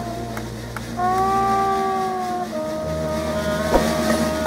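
Street band of trombone, sousaphone, clarinet and banjo playing long held wind notes over a low sustained sousaphone bass. The melody note changes pitch twice, with a few light plucked or percussive clicks.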